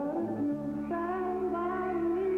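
A man singing in a high tenor into a microphone. His voice glides up into a long held note with a slight vibrato, over a band playing slow sustained chords.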